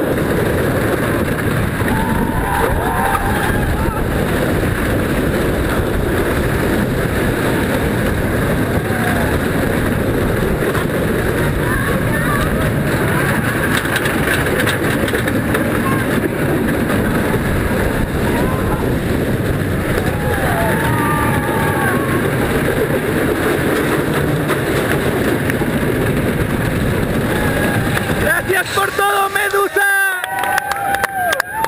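Wooden roller coaster train running along its track, heard onboard as a loud, continuous rumble and rattle mixed with heavy wind on the microphone, with riders yelling now and then.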